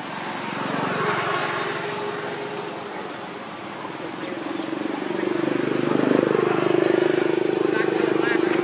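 A motor vehicle engine, growing louder through the second half as it comes closer, with a steady low hum.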